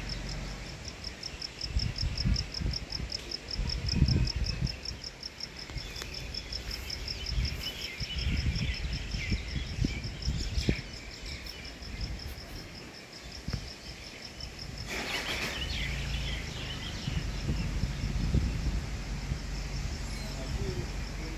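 A cricket chirping in a steady, high, evenly pulsed rhythm, with birds twittering now and then, loudest about halfway through and near three-quarters. Irregular low rumbling runs underneath.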